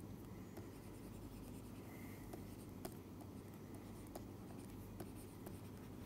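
Faint, irregular light taps and scratches of a stylus writing on a tablet screen, over a low steady background hum.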